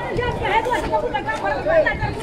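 Market chatter: several people talking at once, none clearly in front.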